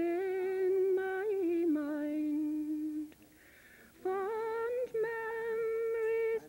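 A woman's voice singing a slow tune in long held notes that step down in pitch, breaking off for about a second near the middle before starting again on a higher note.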